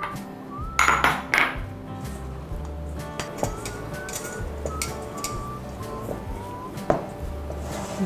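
Background music with a light melody, over clinks of utensils against a stainless steel mixing bowl as stiff cookie dough with chopped nuts is stirred with a spatula; the loudest clinks come about a second in, and one more near the end.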